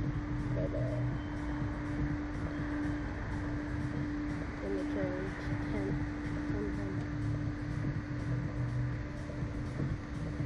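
A steady machine hum with a low rumble underneath, and faint voices in the background now and then.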